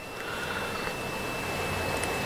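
Steady hiss of a broadcast or phone line with a thin, high, steady whistle running through it, which is called microphone feedback.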